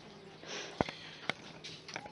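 A faint sniff, then two light clicks about half a second apart.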